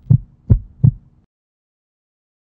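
Heartbeat sound effect: low, deep double thumps in lub-dub pairs, two beats a little over a third of a second apart, stopping a little over a second in.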